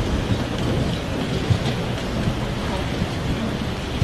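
Audience applauding in a large gymnasium, a steady wash of clapping with a low rumble.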